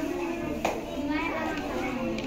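Several children's voices chattering at once in a room, with a sharp click about two-thirds of a second in.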